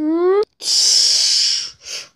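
A child making battle sound effects with the mouth during toy play: a short voiced whoop rising in pitch, then a loud hiss lasting about a second, and a brief second hiss near the end.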